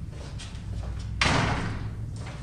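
An apartment's entrance door slams shut a little over a second in, the bang dying away over about half a second, over a low steady hum.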